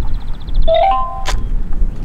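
Steady low rumble of wind on the microphone. A rapid high-pitched pulsing beep or trill sounds near the start, then a short run of clear tones stepping upward and a sharp click about halfway through.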